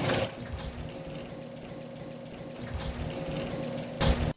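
Machinery sound effect of the lumber load being drawn out of the treating cylinder: a steady mechanical hum with a few held tones, starting with a brief louder rush that dies away within the first fraction of a second.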